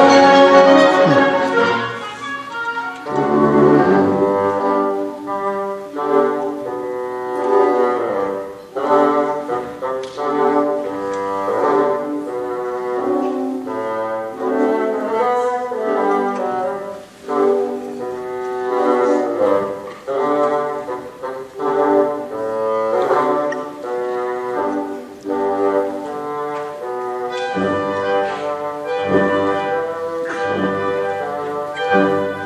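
Concert band of woodwinds and brass playing, with held chords and moving melodic lines. The full band is loud for the first couple of seconds, then drops to a softer passage.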